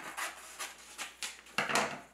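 Scissors snipping through a paper print laminated with packing tape, a series of short rasping cuts with the loudest near the end.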